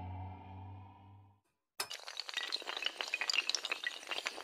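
A sustained synth chord fades out, and after a short gap a sudden, continuous clatter of many small hard pieces begins: a sound effect of blocks toppling over like dominoes.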